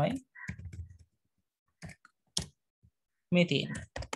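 Computer keyboard keys clicking in a few separate taps as a word is deleted and retyped, with a voice speaking briefly near the start and again about three and a half seconds in.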